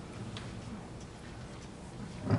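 Quiet room tone of a large hall: a low steady hum with a few faint clicks.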